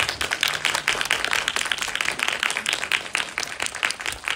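An audience applauding, with many people clapping at once without a break.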